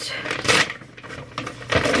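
A bag rustling and tearing as it is pulled open, loudest about half a second in, then quieter handling.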